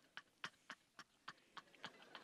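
Faint, evenly spaced hand claps, about three or four a second, from one or a few people clapping after a laugh line.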